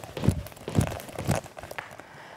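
Skipping rope with both feet together: short thuds of feet landing and the rope hitting a hard floor, about two jumps a second.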